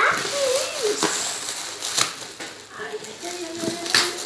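Gift-wrapping paper rustling and crinkling as it is torn open by hand, with a few sharp rips. Short high-pitched voice sounds come in briefly twice.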